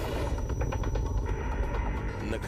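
Cinematic sound effect: a deep, continuous rumble with dense rapid crackling.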